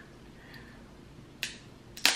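Two sharp crunches of a stale tortilla chip being bitten, about a second and a half in and again near the end.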